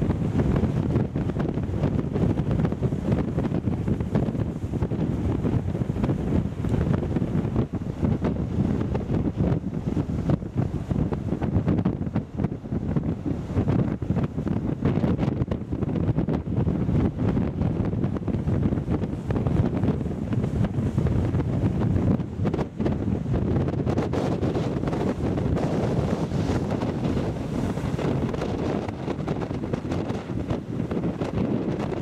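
Strong wind buffeting the microphone in gusts, a heavy low rumble, with rough surf washing over rocks beneath it.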